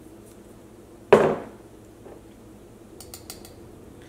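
A single sharp clink of kitchenware about a second in, ringing briefly, followed by a few faint light ticks near the end.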